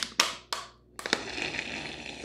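Plastic water bottle crackling with a few sharp clicks as it is squeezed over the eggs, then a short hiss as the bottle is let go and sucks up an egg yolk to separate it from the whites.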